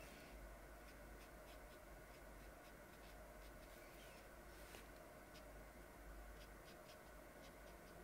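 Near silence: faint light ticks and strokes of a small paintbrush on watercolour paper as short pine needles are flicked in, over a low steady hum.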